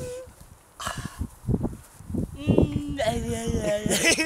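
A young man laughing in short, bouncing bursts in the second half, after a few scattered low thumps and rustles.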